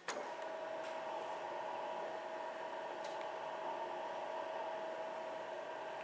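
A steady mechanical hum with a high, even whine, starting with a click.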